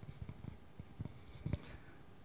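Faint, scattered small knocks and rustling from people moving about in the hall, with a couple of slightly stronger thumps about a second and a second and a half in.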